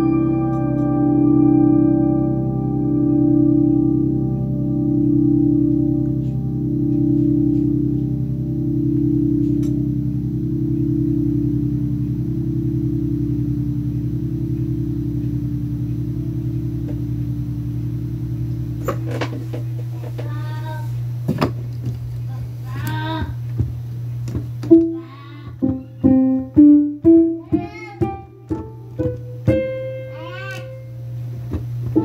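Electronic keyboard holding a sustained chord with a slow, even pulsing tremolo, about one swell every second and a half. About two-thirds of the way through the chord drops to a held low bass note, and short, loud single notes are played over it.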